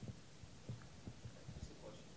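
Quiet room tone in a lecture room with several soft, low thumps at irregular intervals.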